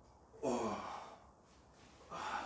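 A man's pained sigh: one short voiced exhale about half a second in, falling in pitch, drawn out by deep-tissue pressure on his side and lower back.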